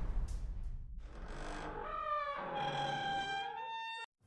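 Intro sound-effect sting: the tail of a heavy reverberant hit fading out, then a swell that rises into a held, brass-like chord, which cuts off abruptly at the end.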